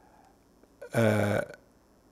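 A man's single short vocal sound, steady and low in pitch, lasting about half a second, around a second in, with quiet on either side.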